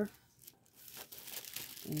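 Tissue paper crinkling as it is folded down inside a cardboard shipping box, a faint rustle that grows louder toward the end.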